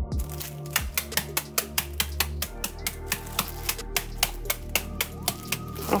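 Gas range burner igniter clicking rapidly, about five clicks a second, for several seconds while the burner is being lit, over background music.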